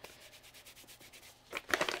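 A moist cleansing wipe rubbed back and forth over the skin of a hand: quick, soft rubbing strokes that grow louder about one and a half seconds in.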